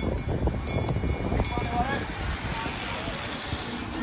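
A pack of track bikes passes close by with a high, steady whir of chains and tyres that fades after about two seconds. A low rumble of wind on the microphone and voices from the crowd run underneath.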